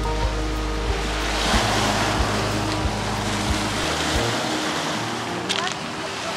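Small lake waves breaking and washing over a pebble beach, a steady rushing wash. Background music with a steady beat plays under it and stops about four seconds in.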